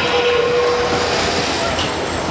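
The FRC field's 30-second endgame warning whistle: one steady tone that stops about a second in, over a constant din of arena crowd and robots.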